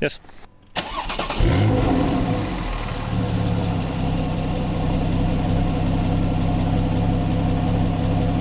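Porsche 911 (991) Carrera 4's 3.4-litre naturally aspirated flat-six starting. A brief crank comes about a second in, then a rev flare that falls away over the next second or so. It then settles into a steady idle.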